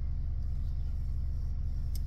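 Car engine running, heard inside the cabin as a steady low hum.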